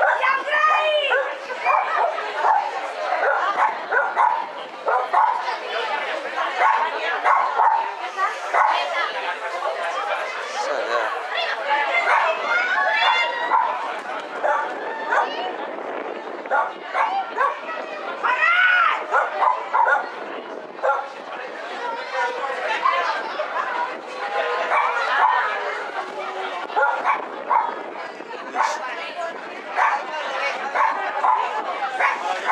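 A small dog barking and yipping again and again while it runs an agility course, with a person's short called commands mixed in.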